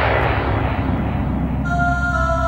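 Synth-pop track: a loud whoosh of noise that falls in pitch and fades away over steady held bass notes, with sustained synthesizer chords coming in near the end.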